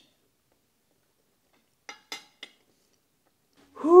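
Three light clinks of a metal fork against a ceramic plate, about two seconds in, during an otherwise near-silent stretch. Near the end a loud breathy "whew" from a man's voice begins.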